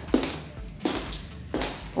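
Three slow, evenly spaced footsteps of block-heeled sandals on a wooden floor, over background music.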